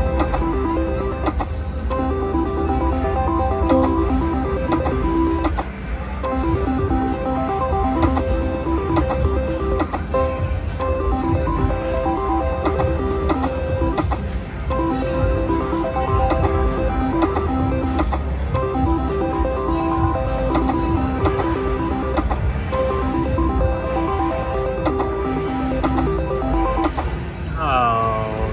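IGT three-reel Pinball slot machine playing its electronic spin tunes, short beeping note patterns repeating as the reels spin, over a steady low casino rumble. The tunes break off briefly about six seconds in and again about fourteen seconds in, and a rising swoop sounds near the end.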